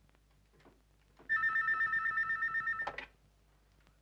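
Electronic desk telephone ringing once: a loud warbling two-tone trill lasting about a second and a half, starting a little over a second in and ending with a click.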